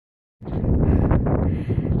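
Strong wind buffeting a phone's microphone: a loud, unpitched low rumble that cuts in a moment after the start.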